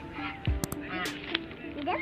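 Domestic goose honking, with a low thump about half a second in.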